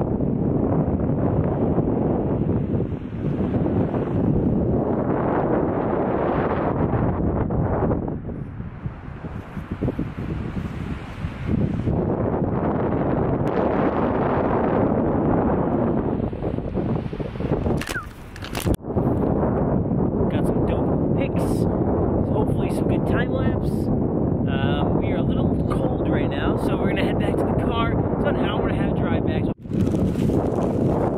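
Wind buffeting the camera's microphone, a steady heavy rush that eases for a few seconds about a third of the way in and dips again briefly just past the middle.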